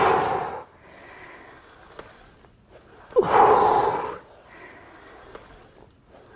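A man breathing out hard twice, about three seconds apart, each a loud rush of breath lasting about a second. These are the forced exhales that go with pulling an ab wheel back in during rollouts.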